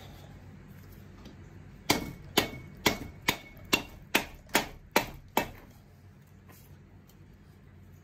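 Rubber mallet striking the aluminium cylinder head of an air-cooled VW 1600 engine, nine sharp blows about two a second, to knock the stuck head loose from its studs.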